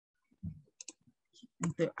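A few faint, sharp clicks of a computer mouse about a second in, in otherwise quiet gaps between words.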